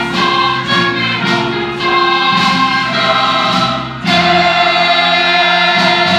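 Mixed choir singing a Christmas choral anthem in Korean with orchestral accompaniment; about four seconds in the full ensemble comes in on a loud chord and holds it.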